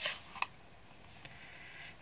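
Light plastic clicks from handling an ink pad case and a brush pen: a sharper click at the start and a softer one just under half a second later, then faint handling rustle.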